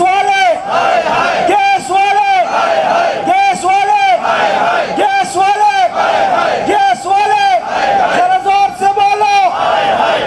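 Protest slogans shouted into a microphone by a man and chanted back by a crowd, in loud, strained shouted phrases repeating about once a second.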